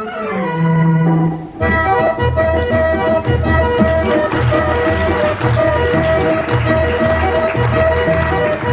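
Accordion prelude of a 1950s Hindi film song, played back from the soundtrack: held accordion notes, then about a second and a half in a low, steady beat comes in under the accordion melody.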